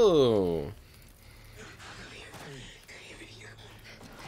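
Film soundtrack audio: the end of a loud drawn-out cry that falls in pitch and cuts off under a second in, followed by quiet voices and breathy sounds.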